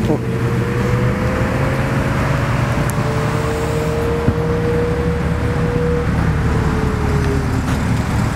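Cars driving slowly past one after another, their engines running steadily with road noise; a silver Mercedes-Benz SL passes close by. A held engine tone drifts slightly up and down in pitch throughout.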